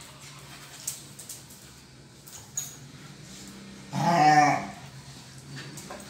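Dogs play-fighting: a couple of light knocks early on, then about four seconds in one dog lets out a single loud, wavering growling yelp lasting under a second.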